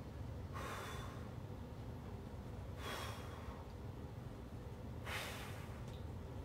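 A man's breathing under strain while holding a bodyweight bridge hold: three strong breaths, about two and a half seconds apart.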